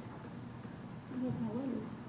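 Quiet room tone, then about a second in a soft, faint murmured voice for less than a second, too low to make out words.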